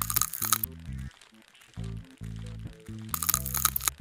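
Two bursts of crisp crackling and crunching, one at the start and one near the end, each under a second long: a scraping sound effect for a scalpel lifting off ticks. Background music with low sustained notes plays underneath.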